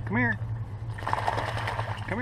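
Chocolate Labrador splashing through shallow river water, the splashing picking up about halfway through. A short pitched vocal sound comes just after the start, over a steady low hum.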